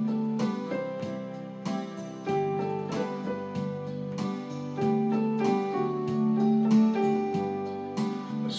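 Electric keyboard with a piano sound playing an instrumental passage: sustained chords under a simple melody, with notes struck at a steady pace.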